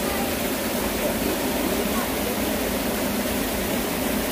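Steady rush of a shallow mountain stream flowing over rocks, a constant even noise with no breaks.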